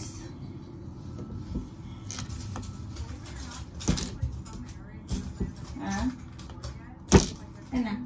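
Hands working at a plastic Mini Brands capsule ball and its wrapping: scattered rustles and small clicks, with a sharp click about a second before the end.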